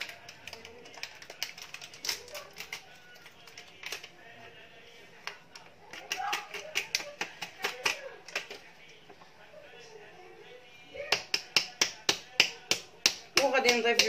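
Orange plastic sieve tapped by hand to sift flour and cocoa into a bowl of batter: short sharp clicks, scattered at first, then an even run of about three to four a second near the end.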